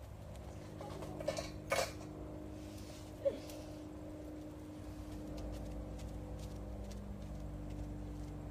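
A steady low hum with a few brief knocks and clatters between about one and three seconds in, and a low rumble from about halfway through.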